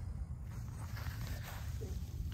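Wind buffeting the microphone outdoors: a steady, low, fluctuating rumble.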